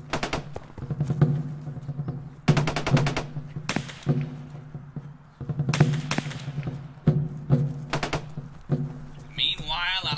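Several bursts of rapid automatic gunfire over a score with a sustained low drone. A voice cries out near the end.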